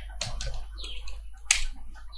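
Computer keyboard keys clicking as a few keystrokes are typed, with one sharper, louder click about one and a half seconds in.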